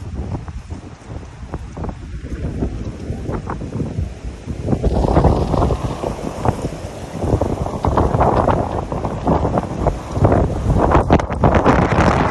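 Gusty wind buffeting the phone's microphone as a rough, uneven rumble that grows stronger about five seconds in, with further gusts toward the end.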